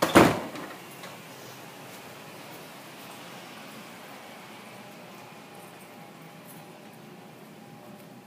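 A single loud thump at the very start that dies away within half a second, then a steady faint hiss of room tone.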